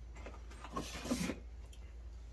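Faint rustle and scrape of a cardboard advent calendar box as a beer bottle is worked out of its compartment, loudest around the middle, over a low steady hum.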